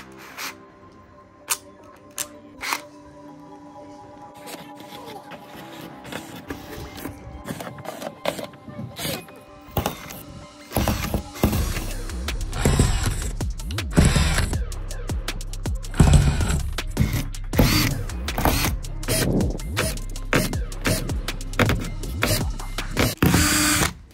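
Makita 18V cordless drill with a 1.5 mm bit drilling through a car headliner board hole after hole in short repeated bursts, loud from about halfway in, over background music. Earlier, a few clicks as the drill's chuck is tightened by hand.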